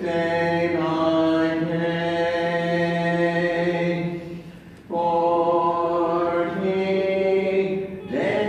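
Voices singing the entrance hymn in long held notes, with a short break between phrases about four and a half seconds in.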